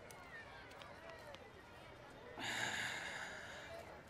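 A man's long, breathy breath, about a second long, starting a little past halfway through, over faint room tone.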